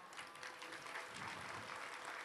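Faint steady background noise, a low even hiss with a faint hum under it.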